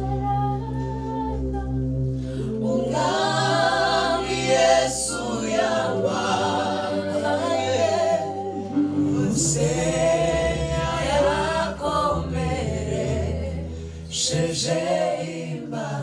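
A small mixed group of young male and female voices singing a gospel song together in harmony through handheld microphones. The singing swells fuller about two and a half seconds in, over a steady low sustained chord.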